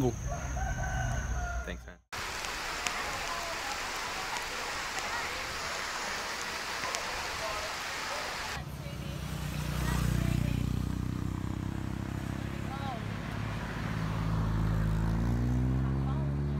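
Rain and water running down a stone staircase, a steady hiss. About eight and a half seconds in, this gives way to a motor vehicle's engine running, its pitch climbing near the end as it speeds up.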